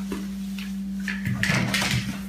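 A steady low electrical hum. About a second and a half in comes a short stretch of rustling and handling noise as someone moves back into place.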